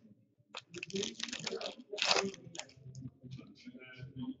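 A foil hockey card pack wrapper crinkling as a pack is taken from the stack and torn open: a run of crackly rustles from about half a second in, loudest around one and two seconds in, then lighter rustling and clicks as the cards are handled.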